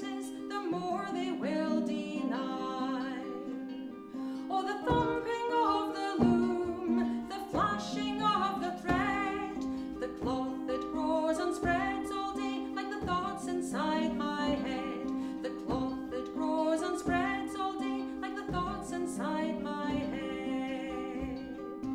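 A harp is plucked while a woman sings a folk song. About five seconds in, a bodhrán joins with a low beat roughly every second and a bit.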